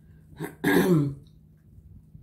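A woman clearing her throat once: a short catch about half a second in, then a louder rasp lasting about half a second.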